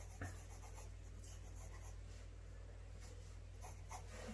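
Faint scratching of a Faber-Castell graphite pencil sketching on sketchbook paper, in clusters of quick short strokes with pauses between, over a steady low hum.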